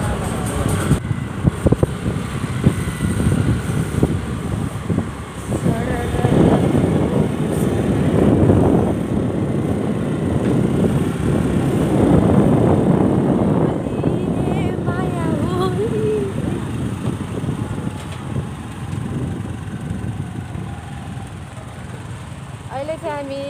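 Wind rushing and buffeting over the phone's microphone on a moving motorcycle, with the motorcycle's engine and road noise underneath. It is loudest in the middle of the stretch. A voice breaks through briefly a little after the middle.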